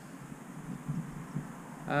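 Quiet outdoor background: a faint, steady low noise with no distinct events, until a man starts speaking right at the end.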